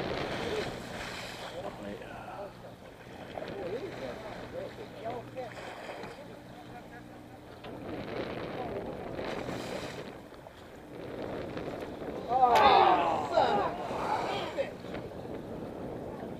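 Indistinct voices of people talking on a boat's deck over wind and sea noise, with a steady low boat engine hum in the first half. A louder burst of voices comes about three quarters of the way through, starting with a sharp click.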